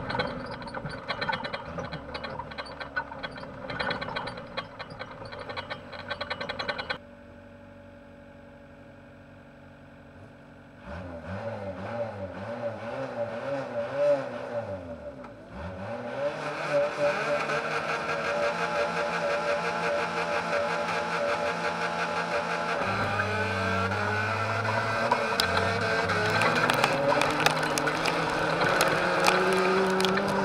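Autocross race car's engine heard from inside the cabin. It runs hard for the first few seconds, then drops suddenly to a steady idle. Around the middle it is blipped up and down several times, then pulls hard and keeps running loud under acceleration, with knocks and clatter near the end.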